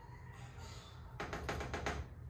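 A metal fork clicking and tapping against a saucepan of marinara sauce as it is stirred: a quick run of small taps about a second in, faint overall.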